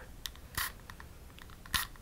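Close-up handling noise from a flexible measuring tape held at the microphone: two short, crisp rustles, one about half a second in and one near the end, with a few faint ticks between them.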